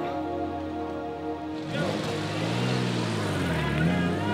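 Background music; about two seconds in, a classic sports car's engine comes in over it, its note rising and then falling in pitch as the car drives off.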